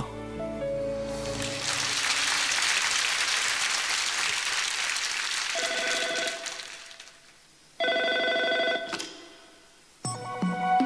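A brief held musical chord, then studio audience applause that swells and fades. As the applause dies away, a telephone bell rings twice, each ring about a second long and a little over a second apart.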